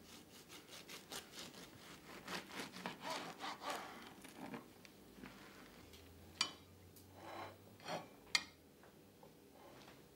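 A kitchen knife sawing back and forth through a thick layered sandwich of wholemeal bread, cheese and prawns, in quick strokes of about three a second for the first four seconds or so. Later come a couple of sharp clicks as the knife meets the plate.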